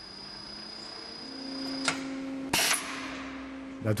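Steady electrical hum of machinery: a faint high whine that stops with a click just before halfway, a lower hum that sets in about a second in, and a short burst of noise a little past halfway.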